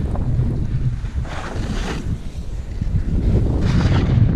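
Wind buffeting the microphone of a camera worn during a fast downhill ski or snowboard run, a steady low rumble. Twice, about a second in and again near the end, there is a swishing scrape of edges carving through the snow.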